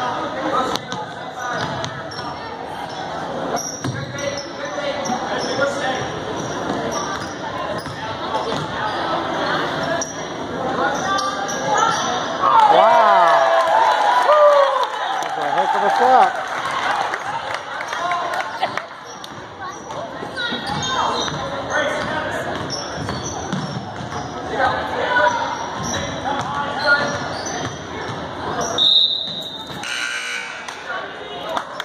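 Basketball game sounds on a hardwood gym floor: a ball bouncing and spectator chatter throughout. A loud run of sneaker squeaks comes about halfway through, and a short referee's whistle sounds near the end.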